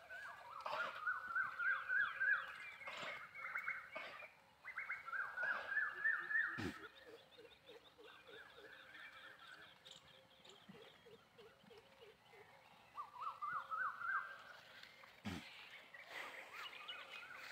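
Animal calls: several bouts, a second or two long, of rapid pulsed notes repeated about ten times a second. A lower, fainter pulsed call runs in the middle, and there are a few short knocks.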